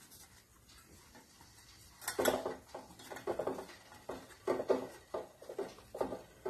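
Banana-leaf parcel rustling and crinkling as a hand presses and arranges it in a steel pot. The rustles come in irregular strokes starting about two seconds in.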